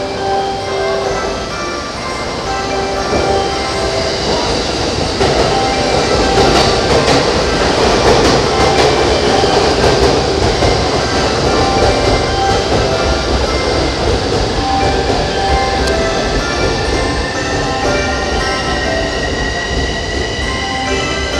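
An electric train running on the platform track, its rumble of wheels on rails building up and loudest in the middle. A thin whine rises in pitch near the end.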